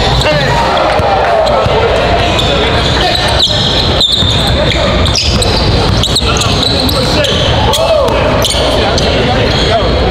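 Live sound of a basketball game in a large gym: a ball bouncing on the hardwood court several times, sneakers squeaking and voices chattering, all echoing in the hall.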